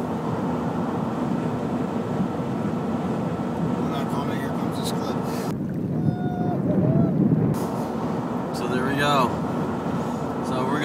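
Steady road noise inside a pickup truck's cab. It is broken for about two seconds in the middle by a cut-in stretch from a kayak on open water, heavier in low rumble.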